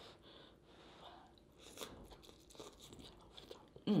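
Close-up eating sounds of a person chewing seafood: faint, scattered wet smacks and clicks of chewing, which grow more frequent after about a second and a half, ending in a hummed "mmm".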